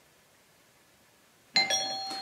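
Silence, then about one and a half seconds in a doorbell chime strikes and keeps ringing as it slowly fades.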